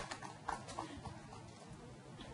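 A few last, scattered hand claps from a seated crowd as applause dies away, about a second in, over faint open-air background.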